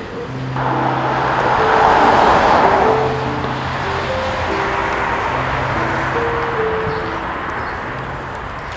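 Slow background music of held notes over road traffic noise: a car passes, loudest about two seconds in, then traffic continues at a lower level.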